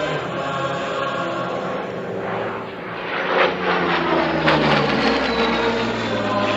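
Aircraft engine passing over a choir, growing louder about halfway through with its pitch falling, as it goes by.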